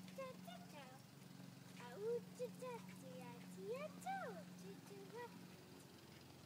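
A faint, wordless high voice sliding up and down in pitch in short sing-song calls, over a steady low hum.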